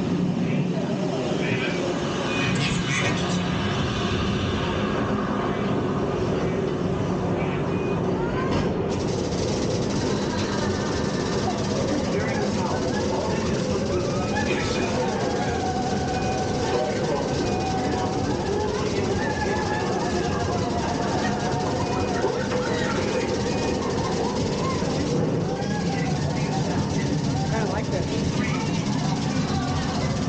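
Simulated Space Shuttle launch in a motion-simulator ride: a steady, loud, deep rumble of main engines and solid rocket boosters played into the cabin, with indistinct voices under it.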